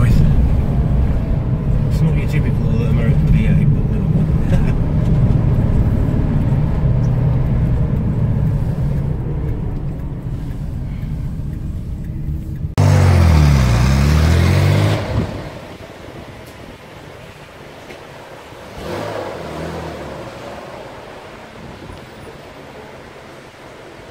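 Chevrolet Corvair's rear-mounted air-cooled flat-six heard from inside the cabin on the move, a steady engine note with road noise. About 13 seconds in it turns louder for two seconds, the engine note dipping and rising again, then drops away to a quieter background.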